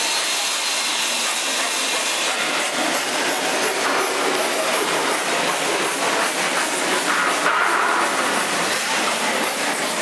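Steady workshop noise of tools at work on plywood and a steel frame: a continuous hissing rush with many small irregular ticks, holding an even level throughout.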